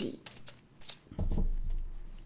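A deck of tarot cards being handled: a few light card flicks and taps, then a louder, duller knock and rustle about a second in as the deck is set on end on the table.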